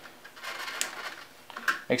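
Phillips screwdriver driving a screw into the radiator through the case top: a soft scraping of tool and screw, with one sharp click a little under a second in.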